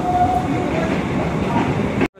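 Electric multiple unit (EMU) suburban local train moving along a station platform, heard from its open doorway: a steady rumble of wheels on rail, with a faint brief high squeal in the first half second.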